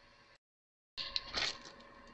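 Faint room tone that drops to dead silence for about half a second at a recording cut, then a few light clicks and a brief rustle of handling on the work table as recording resumes.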